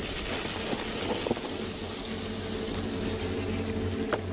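Vinegar boiling and hissing off a fire-heated limestone boulder, a steady steam hiss with a few faint crackles. This is the acid reacting with the hot rock and cracking it apart, with a low steady hum underneath.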